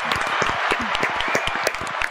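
Several people clapping over a video call, a fast irregular patter of claps.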